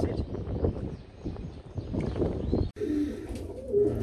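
Domestic pigeon cooing in low, steady notes, starting just after a sudden break about three-quarters of the way in. Before the break there is a rough, muffled rumbling noise.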